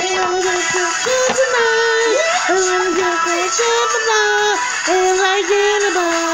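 Music: an electronic-sounding singing voice carries a melody of short, steady held notes that step between a few pitches with quick slides between them.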